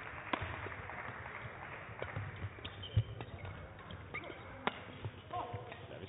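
A badminton rally: a few sharp racket hits on the shuttlecock, a couple of seconds apart, with shoe squeaks and footfalls on the court. The loudest hit, about three seconds in, comes with a low thud. A player gives a brief call near the end, over a steady hall murmur.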